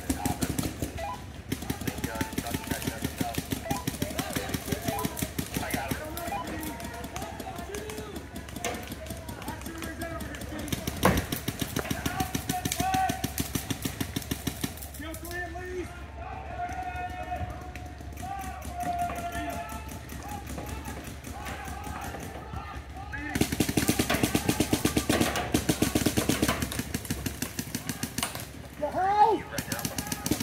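Paintball markers firing in rapid streams of shots. The firing is heaviest in the first several seconds and again near the end, with voices in between.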